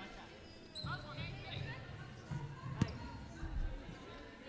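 Arena sound of a basketball game: a basketball bouncing on the court during a free-throw routine, with crowd voices in the background and one sharp knock about three seconds in.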